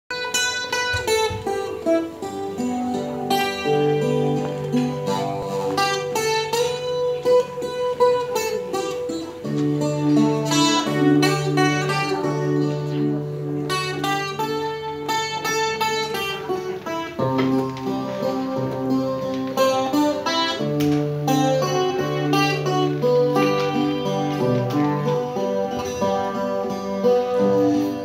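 Solo acoustic guitar played by plucking: a continuous instrumental introduction of picked notes over ringing bass notes, with no voice yet.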